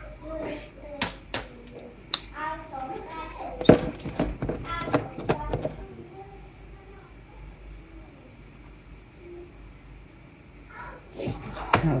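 Hard plastic clicks and knocks as the screw-on blade base of a personal blender cup is twisted off and lifted away, a handful of sharp knocks over the first few seconds, the loudest about four seconds in, then quieter handling.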